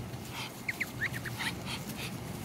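Muscovy ducks feeding, giving a few short, faint high peeps clustered around a second in.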